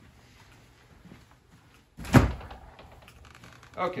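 A door pushed open with a single loud thud about halfway through, the background getting louder after it.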